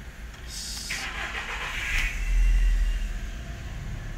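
Fiat Linea car engine started by the key: the starter cranks and the engine catches about two seconds in, running up loudly before easing toward idle.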